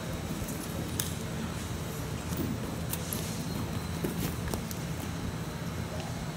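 Wrestlers moving and grappling on a mat: a handful of short taps and scuffs scattered over the few seconds, over a steady low hum of room noise.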